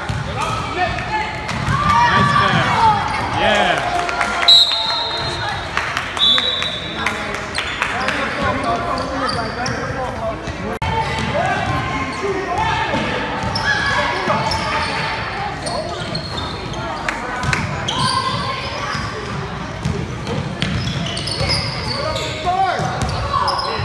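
Basketball game sound in a large echoing gym: a ball bouncing on the hardwood floor under overlapping shouting voices of players and spectators, with two short high squeaks a few seconds in.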